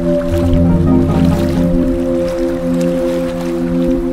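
Slow ambient new-age music: a held chord of steady tones, with a deep bass note that comes in just after the start and stops about a second and a half in.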